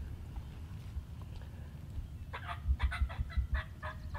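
Wild turkey calling in a quick string of short clucks, starting a little past halfway. A low rumble runs under the first part.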